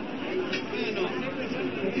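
Indistinct chatter of several voices, quieter than the reading voice before and after.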